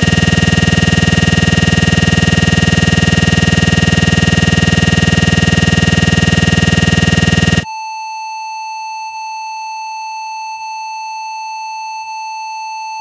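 Loud, harsh electronic buzz, the stuck-audio drone of a crashed computer, held steady for about seven and a half seconds. It then cuts off abruptly and is replaced by a quieter, continuous high-pitched beep tone.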